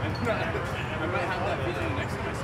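People talking in conversation, the words indistinct, over a low steady hum.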